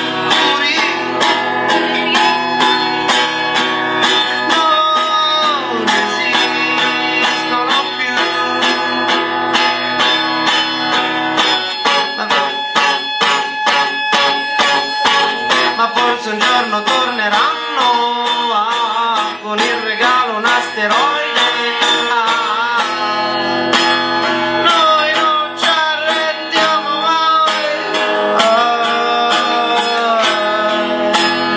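A live song: steadily strummed guitar with a singing voice over it.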